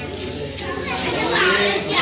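Children's high voices calling and chattering among adult talk in a room, louder in the second half.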